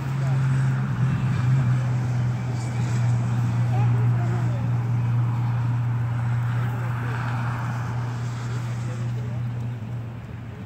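A motor running with a steady low hum that settles slightly lower in pitch in the first second or so and cuts off just before the end.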